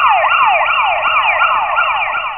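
Electronic siren sound effect, a fast yelp whose pitch swings up and down about four times a second.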